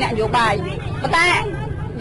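Speech throughout, with a steady low rumble underneath.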